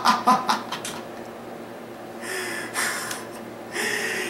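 A man laughing: a few quick laugh pulses in the first half second, then two long, breathy exhaled laughs a little past the middle.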